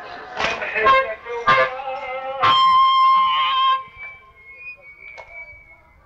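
Old recording of a male reciter chanting a Shia latmiya mourning chant, punctuated by sharp chest-beating strikes, ending on one long held note about two and a half seconds in. After that the level falls away to a faint thin tone.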